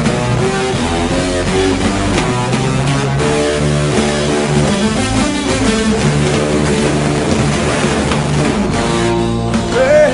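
Instrumental rock music led by guitar over bass, playing steadily with no singing.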